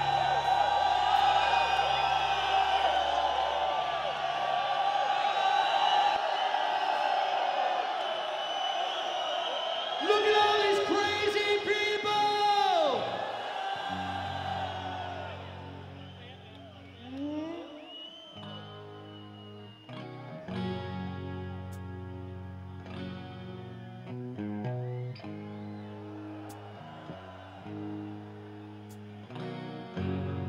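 Live hard-rock band with a crowd: a loud sustained band ending over many voices, whose held note bends down and cuts off about halfway through. After that, an electric guitar plays short chugging riffs in stops and starts, with one rising slide.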